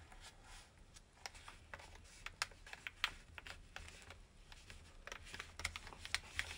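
Sheet of origami paper being folded and creased by hand: faint, scattered crinkles and light ticks as the fingers press and shift the layers.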